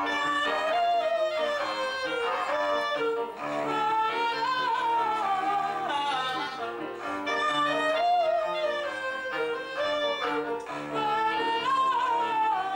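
A woman singing a slow melody that rises and falls in long held phrases, over sustained chords and a repeating bass line played on an electric stage keyboard.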